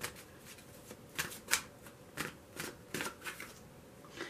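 A deck of oracle cards being shuffled by hand, overhand style: an irregular series of short card clicks and slaps.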